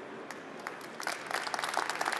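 Audience applauding at the end of a talk: a few scattered claps at first, then the applause fills in and grows about a second in.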